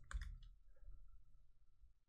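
A few faint keystrokes on a computer keyboard, bunched in the first half second.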